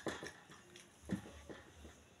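Faint eating sounds: a few soft clicks and scrapes of a spoon against a plate as rice and stew are scooped up, the clearest about a second in.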